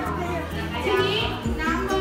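Classroom chatter: many pupils' voices talking over one another, over a steady low hum.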